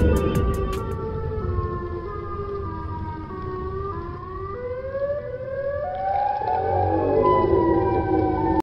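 Siren-like wailing sound effect: several layered held tones that step and slide in pitch, climbing higher from about halfway through. A beat of music fades out within the first second.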